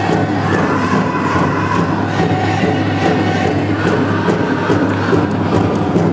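Pow wow drum group: singers chanting in high voices over a steady beat on the big drum, with the hum of the crowd in the hall underneath.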